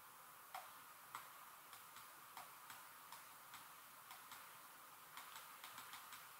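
Faint, light ticks at uneven spacing, about two a second, over near silence: a stylus touching down on a touchscreen as letters are handwritten. The ticks are clearest about half a second and a second in.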